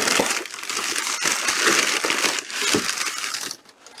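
Crumpled brown kraft packing paper rustling and crinkling as it is pulled out of a cardboard box, stopping about three and a half seconds in.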